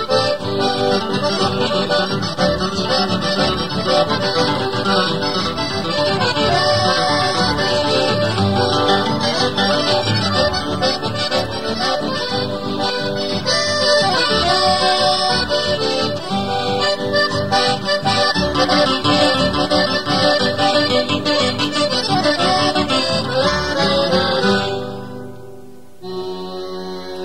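Chamamé played on accordion with guitar accompaniment, the accordion carrying the melody at a steady, lively level. The piece ends and fades away about a second before the end.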